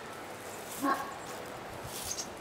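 One short, faint bark-like call about a second in, likely a distant dog, over a steady hiss of outdoor background noise.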